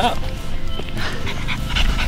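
French bulldog puppies playing, with music in the background.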